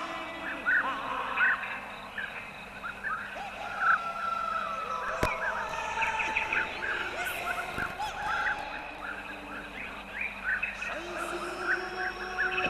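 Many short bird chirps and calls over soft background music.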